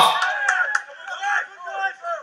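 Excited shouting from several voices, one calling "you're off!" right at the start and others yelling encouragement, as a rugby player breaks away.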